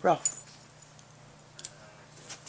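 Small metal collar tag on a French Bulldog puppy jingling in two brief clinks, about a quarter second in and again near the end, as the puppy wrestles with a toy.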